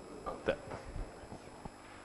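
Handheld microphone being passed from one hand to another, giving a few knocks and thumps of handling noise. The loudest comes about half a second in, with smaller ones around one second and near the end.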